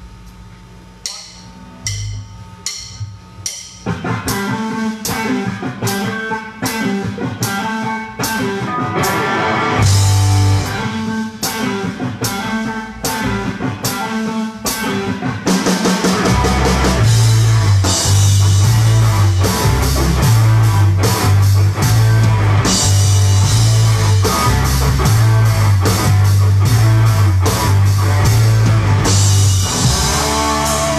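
Live rock band playing a song's instrumental intro on drums, electric guitar and bass guitar. It opens with a few evenly spaced ticks, the full band comes in about four seconds in, and the bass and drums grow heavier and louder about halfway through.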